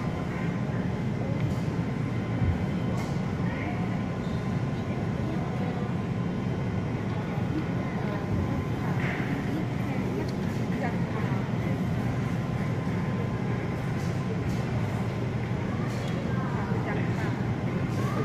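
Supermarket background: a steady low hum of the store's ventilation and refrigerated cases, with faint voices of other shoppers now and then.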